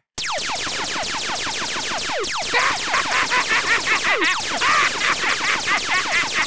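Rapid-fire cartoon ray-gun zaps: a fast string of falling 'pew' laser sweeps, several a second, over a steady noisy rattle. It starts suddenly and pulses harder from about halfway through.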